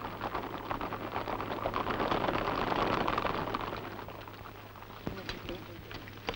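Battle din on an old film soundtrack: a dense crackle of many small sharp cracks that swells to its loudest a couple of seconds in, then fades away.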